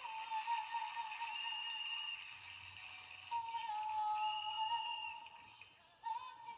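A female pop singer holding long, sustained notes into a microphone over soft backing music, played back from a DVD through computer speakers. The singing fades out near the end.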